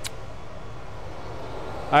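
Steady whir of workshop machinery, an even hum with no rhythm, with one short click at the very start.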